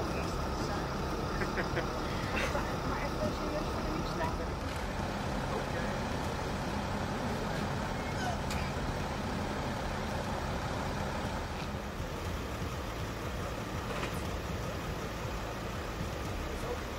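A vehicle engine idling steadily, a constant low hum throughout, with people talking in the background during the first few seconds.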